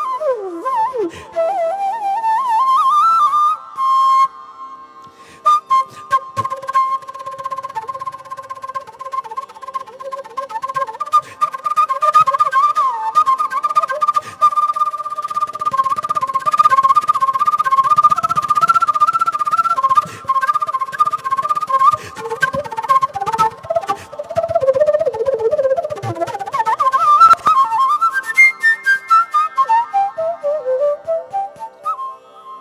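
Carnatic bamboo flute playing a fast, heavily ornamented melody, with quick turns on the notes and sliding glides up into phrases near the start and near the end. Light percussion strokes run underneath.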